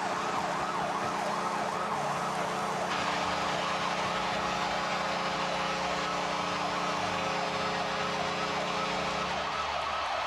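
Ice hockey arena goal horn sounding one long steady blast for about nine and a half seconds, over a cheering crowd, signalling a home-team goal.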